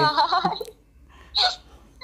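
A man's short laugh in the first half-second, then one brief second burst of voice about a second and a half in.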